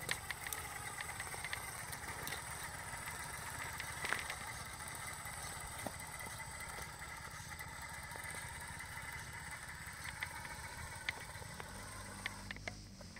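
Scale RC FJ40 crawler running, a steady mechanical hum and whine with scattered small clicks and knocks.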